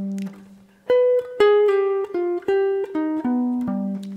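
Hollow-body electric jazz guitar playing a single-note line over a G7 altered chord in a minor ii–V–i. A low note rings and fades over the first second, then about nine picked notes follow one after another.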